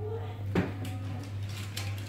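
A pizza wheel cutter knocking and clicking against a cutting board as it cuts strips into a round of dough: one sharp knock about half a second in, then a few lighter clicks, over a steady low hum.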